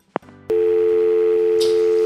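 A short click as the call is cut off. About half a second in, a steady telephone dial tone of two low notes together begins on the line: the other party has hung up.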